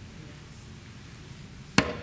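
A single sharp knock near the end, over low room hiss.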